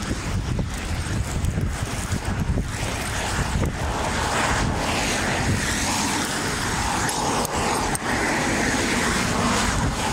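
Wind buffeting a phone's microphone in a low rumble, over the steady noise of road traffic that swells about halfway through.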